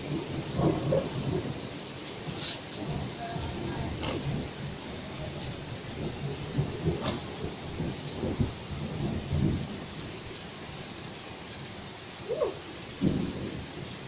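Heavy downpour: a steady hiss of rain falling on pavement and roofs, with irregular low rumbling under it and a few sharp ticks.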